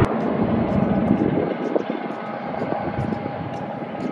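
Distant jet engines of a Qatar Airways Boeing 777 rolling out along the runway after landing: a steady rushing engine noise with a faint whine, slowly getting quieter.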